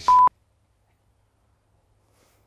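A short, steady censor bleep tone over a swear word, lasting about a quarter second, then the sound cuts out completely to silence.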